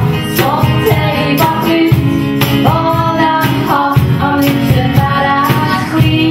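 Live acoustic band playing a song: female vocals over strummed acoustic guitar, with a beat kept on a cajón.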